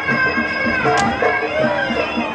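Traditional Muay Thai ring music (sarama): a wailing Thai reed oboe (pi java) playing a wavering melody over a steady drum beat. A single sharp click cuts through about halfway.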